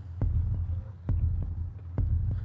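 Horror-style heartbeat sound effect: a loud low throbbing drone with a heavy thud about once a second, building suspense.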